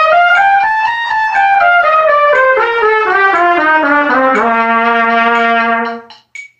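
Solo trumpet playing a scale: it climbs step by step to its top note about a second in, then comes back down note by note. It settles on a long held low note for the last second and a half and stops at the end.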